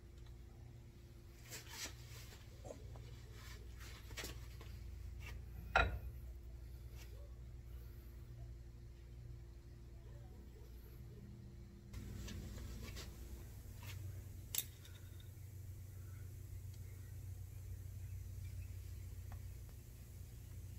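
Steel axle shaft and universal joint being handled and fitted by hand: scattered small metal clicks and knocks, with one louder knock about six seconds in and a sharp click later on.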